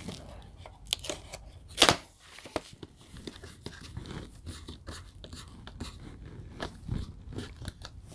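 Plastic wrapping being peeled and pulled off a metal steelbook case, a run of small crackles, crinkles and clicks, with one louder sharp crackle about two seconds in; the wrapping is held on with a lot of glue.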